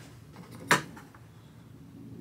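A single sharp tap of a small hand-held object against the top of an archtop guitar, about three quarters of a second in.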